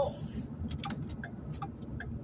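Low, steady rumble of a car's interior with a few faint, light clicks scattered through it.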